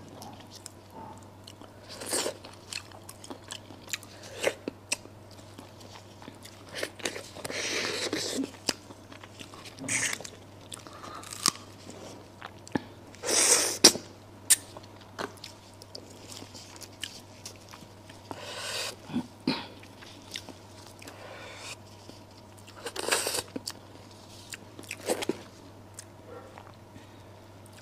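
Close-miked eating of a braised duck head: irregular bites, crunches and wet mouth sounds as the meat is pulled off the bones with gloved hands and chewed, the loudest burst a little past the middle.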